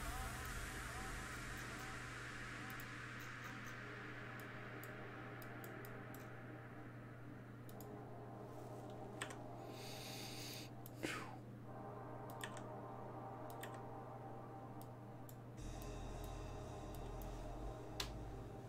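Faint steady low hum with scattered light clicks, and a brief swishing sound with a falling pitch about ten seconds in.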